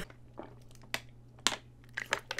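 Drinking from a plastic water bottle: a few short, soft crackles and gulps about half a second apart, with quiet in between.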